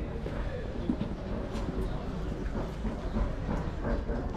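Street ambience while walking along a brick-paved alley: a steady low rumble with scattered faint footstep clicks and faint distant voices.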